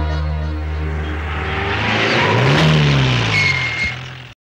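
A car drives up: engine and road noise swell, with the engine pitch rising and then falling as it slows, over a low music drone that fades out. A brief high squeal comes near the end.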